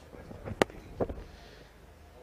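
Cricket bat striking the ball: one sharp, loud crack about half a second in, followed half a second later by a second, duller sound.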